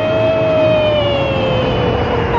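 A long held note, probably a voice, sliding slowly down in pitch over a faint background, with a second, higher note joining near the end.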